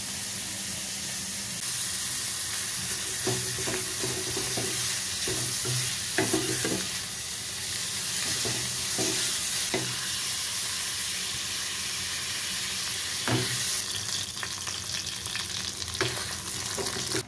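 Chunks of fat sizzling in a hot metal kadai as they start to melt and render out their oil, with a metal ladle scraping and knocking against the pan as they are stirred. The sizzle is steady, and the crackling picks up near the end.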